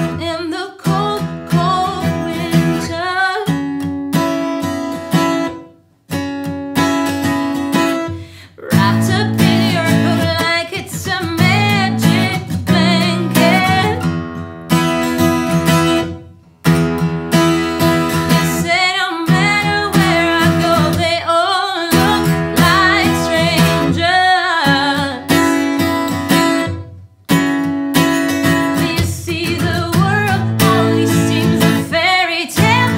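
A woman singing with her own strummed acoustic guitar, a live unplugged song, with brief breaks between phrases.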